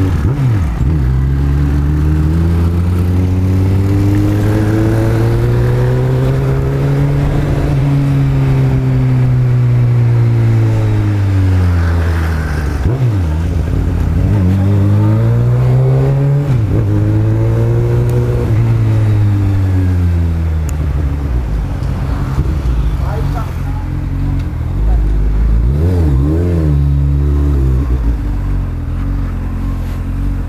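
Honda Hornet motorcycle's inline-four engine under way, its pitch climbing and falling several times as the bike accelerates through the gears and slows again, with sudden drops at the gear changes. A few quick throttle blips come near the end.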